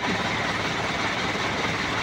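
Truck engines idling in a queue, a steady even running noise.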